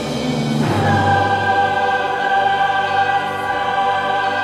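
Mixed choir and string orchestra performing, with the choir singing a long held chord. A new chord comes in just under a second in and is then sustained.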